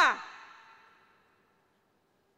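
A woman's spoken word ending at the very start, its echo fading away over about a second, then near silence.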